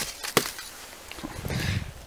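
Handling noise from a handheld camera being turned around: one sharp click about a third of a second in, then a few faint ticks and a low rumble growing near the end.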